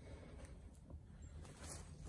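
Near silence: a faint low rumble with a couple of faint ticks.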